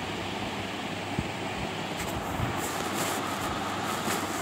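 Steady background noise in a pause between speech, with a faint click about a second in.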